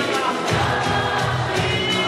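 A choir singing a gospel song with accompaniment over a steady, regular beat.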